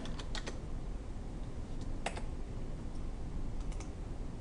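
Computer keyboard keystrokes, a few scattered key presses: a short run right at the start, a single one about two seconds in and a pair near the end, over a faint steady low hum.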